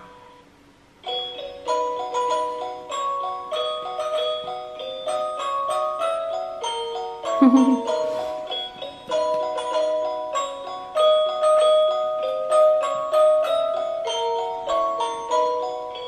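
A tinkly, chime-like electronic Christmas melody, played note by note from a light-up musical Christmas village decoration with a circling toy train. The tune starts about a second in after a short pause.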